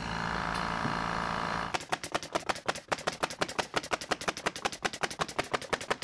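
Small portable air compressor running steadily on battery power, then a sudden change about two seconds in to a rapid, even clicking of about ten clicks a second.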